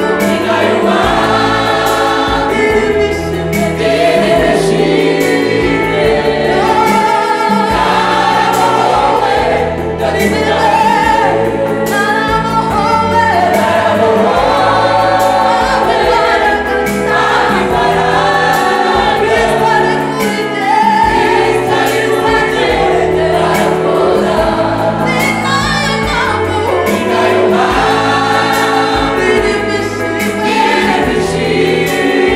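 A Rwandan gospel choir, mostly women's voices, singing together through microphones over a steady low musical backing, without a break.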